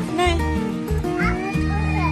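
Background music with a heavy bass beat, and a cat meowing over it: a short meow near the start and a longer rising-and-falling meow in the second half.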